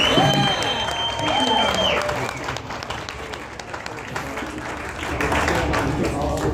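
Audience applauding and cheering as the song finishes, with one long high whistle through the first two seconds and voices mixed in.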